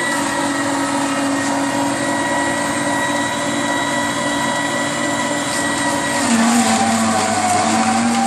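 Electric vertical slow juicer running with a steady motor hum and whine as it presses apple and vegetables. About six seconds in, the pitch dips slightly and the sound grows a little louder.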